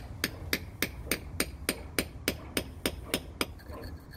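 Lump hammer tapping a steel chisel held in a brick mortar joint, about three to four quick, even strikes a second, chipping out the old mortar. The strikes stop shortly before the end.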